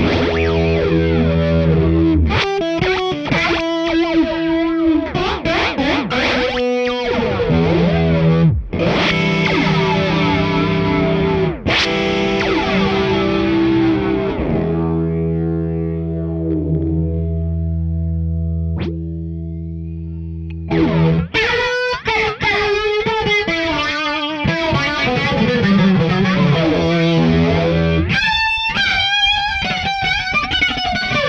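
Electric guitar, a Gibson Les Paul, played through the Meris Polymoon's dynamic flanger with feedback engaged, giving chords a sweeping, jet-like flange. About halfway through, a chord is left ringing for several seconds before the playing picks up again.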